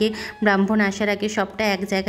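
A woman speaking; only her voice is heard, with no other sound standing out.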